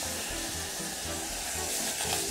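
Crushed garlic sizzling in a spoonful of water in a hot stainless steel saucepan, a steady hiss, with background music playing.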